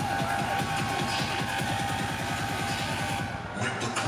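Electronic dance music playing loud over a festival stage sound system, with a fast repeating bass pattern and a held synth tone. The high end briefly drops away near the end before the track comes back in full.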